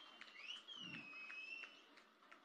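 A faint high whistle-like tone that slides up about half a second in, then slowly falls and fades near the end, with a few faint clicks.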